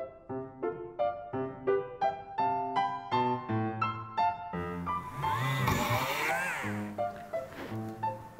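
Piano music with a quick repeated pattern of notes. From about halfway through, a handheld rotary tool runs over the music, its whine rising and falling as it drills into a small metal jewelry piece. It stops shortly before the end.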